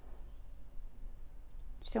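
Faint handling sounds of crocheting, a metal hook working yarn, over a steady low background hum. A woman starts speaking near the end.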